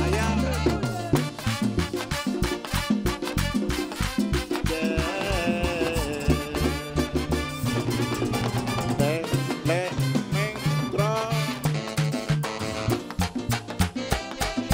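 Live Dominican mambo (urban merengue) band playing: brass riffs from trombone and trumpets over a fast steady beat of güira, congas and bass.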